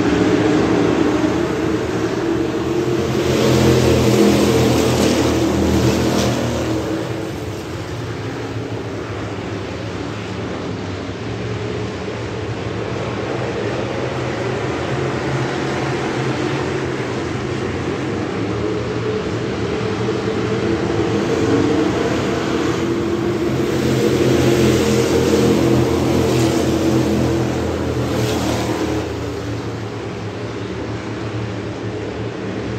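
A pack of Thunder Bomber dirt-track stock cars running laps, their engines rising and falling in pitch as the cars go by. The sound swells twice, loudest about four seconds in and again around twenty-five seconds in, as the pack passes.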